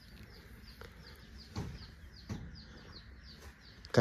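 Chickens calling: a steady string of short, high, falling peeps, about four a second. Two soft knocks come about one and a half and two and a half seconds in.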